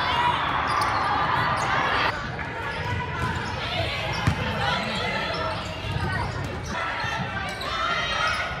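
A volleyball being struck a few times in an indoor gym, sharp slaps and knocks over a steady hubbub of spectators' voices and players' calls. The background changes abruptly about two seconds in.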